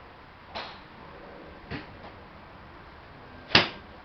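A forged Callaway RAZR X 9-iron striking a golf ball off a driving-range mat: one sharp, loud crack of impact near the end. Two softer, shorter sounds come about half a second and just under two seconds in.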